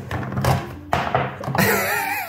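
Plastic disc golf discs being handled and shifted on a table, with a single sharp thunk about a second in, over background music.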